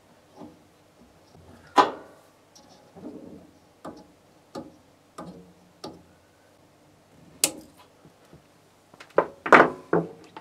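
Hand tool and small parts clicking and knocking against the metal laser head and gantry of a laser cutter as parts are fitted: scattered clicks and taps, a loud click about two seconds in, a sharp one about halfway, and a quick run of knocks near the end.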